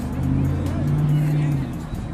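A motor vehicle passing on the road alongside, its low engine drone swelling and fading over about a second and a half.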